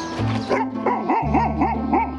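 Golden retriever giving a quick run of about six short whining calls, each rising and falling in pitch, roughly four a second, over background music.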